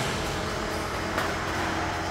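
Electric motor drive of a delivery truck cargo box's automatic load-moving floor running steadily as it pushes the load deeper into the box: an even mechanical hum with a faint steady whine.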